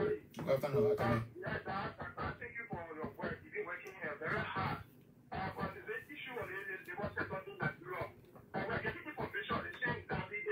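Speech only: a caller talking over a telephone line, the voice thin and cut off in the treble.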